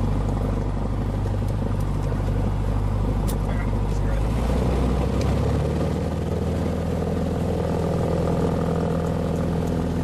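Single-engine light aircraft's piston engine and propeller heard from inside the cockpit, running steadily, then speeding up to a higher pitch about halfway through as power is brought up on the runway.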